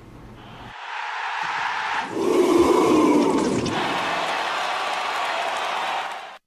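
Recorded crowd of fans cheering and shouting, used as a segment-opening stinger: it swells up over the first second or so and grows louder about two seconds in, then holds steady.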